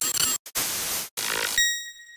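Logo sting sound effect: three bursts of static-like hiss that cut off abruptly, then a bright ping near the end that rings on and fades.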